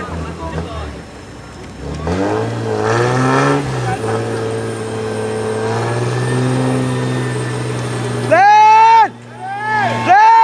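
Off-road 4x4's engine revving up about two seconds in, then held at steady high revs as the vehicle strains in deep mud. Near the end, two loud blasts from a horn cut over it.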